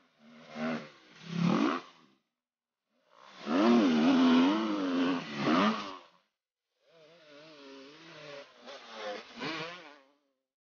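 Dirt bike engine revving as the rider climbs a hill, its pitch rising and falling with the throttle. It comes in three bursts cut apart by short silences, the middle one the loudest.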